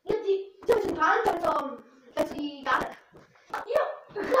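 Children's voices in short bursts of calling and vocalising, with a few sharp clicks or slaps among them.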